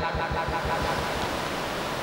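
A motor running steadily under a haze of hiss, with a fast, even low pulsing.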